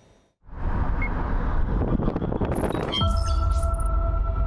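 Road and wind noise of a moving car, a low rumble, starting about half a second in. Music with sustained tones comes in over it about three seconds in.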